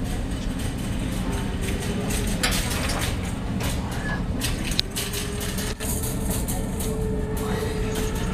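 A steady low rumble of background noise with faint music underneath and scattered light clicks and rustles.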